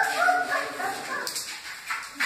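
Newborn Great Dane puppies whimpering in short, high, rapid cries that die away about halfway through, followed by a brief rustle.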